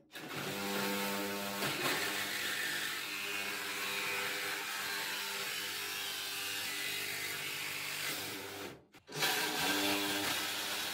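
DeWalt cordless reciprocating saw cutting through the sheet-steel top of a gun safe, running steadily. It stops briefly just before nine seconds in, then starts cutting again.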